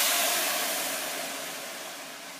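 Wine vinegar hissing and sizzling in a preheated stainless steel frying pan, a loud steady hiss that fades gradually as the liquid settles.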